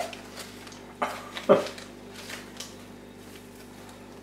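Crumpled newspaper and plastic packing rustling and crackling as it is handled and lifted out of a cardboard box. Two short, sharp crackles come about a second in and half a second later, then a few fainter rustles.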